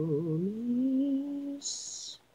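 Isolated a cappella lead vocal from a J-pop rock song: a woman holding a long sung note that slides up in pitch about halfway through and holds, followed by a brief high-pitched sound near the end.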